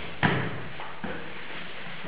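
A border collie and a person scuffling on a rug during a game of tug with a toy: a sharp thump about a quarter second in, then a few lighter knocks, over a steady hiss.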